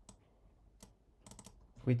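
A few faint computer keyboard key clicks, scattered and then a quick cluster in the second half.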